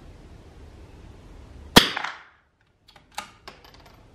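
A single .22 LR rifle shot firing Lapua Long Range ammunition: one sharp crack a little before the middle, with a short echo in the wooden shooting shed. About a second later come a few light clicks, typical of the rifle's bolt being worked.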